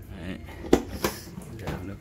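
Panasonic NP-TR5 countertop dishwasher's front door being unlatched and opened: a sharp click about two thirds of a second in, then a second clack a moment later.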